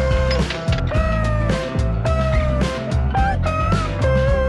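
Background music: a held melody line over a steady bass line and beat.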